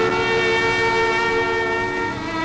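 Film soundtrack music holding one long sustained chord, steady throughout.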